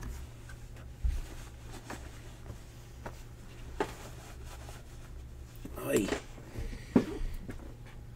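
A quiet room with a steady low hum. Scattered light clicks and knocks, the sharpest about seven seconds in, and a short burst of a man's voice about six seconds in.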